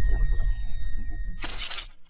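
Logo-intro sound effect: a deep booming hit dies away in a low rumble, then a short bright crash like breaking glass comes about one and a half seconds in.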